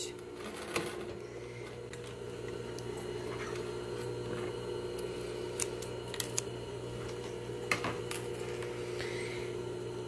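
Steady electric hum of a table-mounted sewing machine's motor left running, with a few light clicks as the thread is snipped with scissors.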